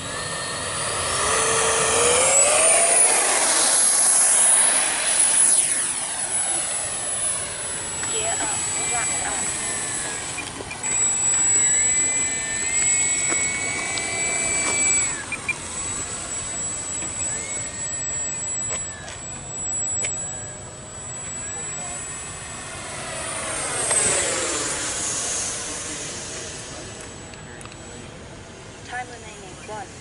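Electric ducted fan of a Freewing F-104 RC jet whining as it powers up for the takeoff run and climbs out, its pitch rising and loudest in the first few seconds. It then circles and passes by again with a rising-then-falling sweep in pitch about 24 seconds in.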